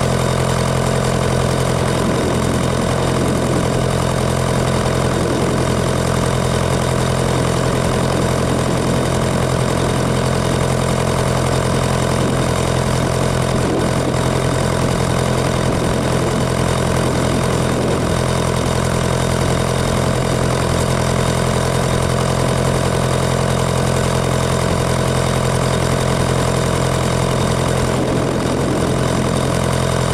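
Nuffield tractor engine running steadily under way, heard from the driver's seat just behind its upright exhaust stack.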